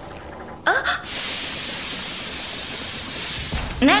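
A short voice sound, like a gasp, then a steady even hiss lasting about three seconds that cuts off just before a voice speaks.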